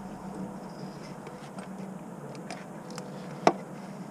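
Faint clicks of a socket on an extension and universal being worked loose from behind the engine, with one sharper metallic click about three and a half seconds in, over a faint steady hum.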